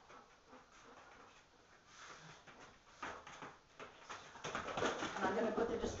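A quiet room with a sharp knock about three seconds in, then a woman talking in a low voice from a little past the middle to the end.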